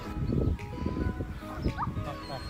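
Background music, with close, irregular crunching and rustling from sheep tearing grass and eating from a hand.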